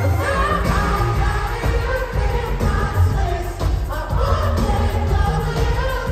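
Live pop music played through a concert PA and heard from high in the audience: a singer's voice over a heavy bass beat that comes in right at the start.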